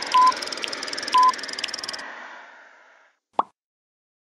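Logo sound design: a hiss with light ticks about twice a second and two short beeps a second apart, fading away, then a single plop falling in pitch near the end.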